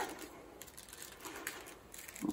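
Faint rustling and small clicks of ivy weavers and spokes as a weaver is drawn through the spokes of a basket rim.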